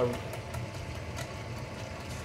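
Electric drain-cleaning drum machine running with a steady low hum and a few faint ticks as its cable is slowly drawn back out of the drain line.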